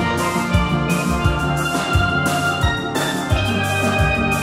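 Steel band playing a tune on steel pans, with low bass-pan notes under the melody and a drum kit keeping a steady beat.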